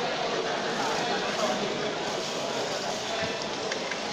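Steady crowd chatter: many people talking at once.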